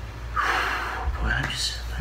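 A man's loud, breathy sigh about half a second in, lasting about half a second, followed by the first murmurs of speech.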